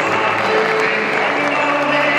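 Football stadium crowd applauding, with music playing over the noise.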